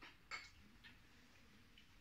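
Quiet eating sounds: a few short, faint clicks, the sharpest about a third of a second in, from chewing and utensils at a meal of fried calamares and grilled pork belly.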